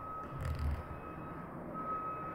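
A faint, thin, high steady tone that fades in and out, stronger at the start and again near the end, over quiet room tone, with a soft low thud about half a second in.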